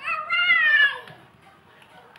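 One high-pitched vocal cry lasting about a second, its pitch falling away at the end.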